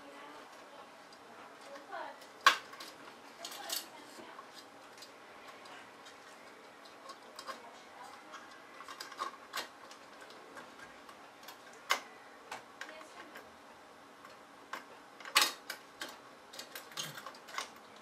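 Sharp plastic and metal clicks and scrapes from a CPU heatsink's retention clip being worked against the processor socket's mounting lugs, which are hard to get hooked. Scattered clicks, the loudest about two and a half seconds in and again near the end.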